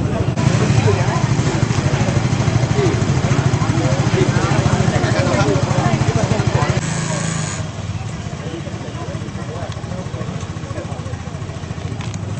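Several people talking at the scene over a steady low engine hum with a rapid even pulse. The whole sound drops in level abruptly about seven and a half seconds in.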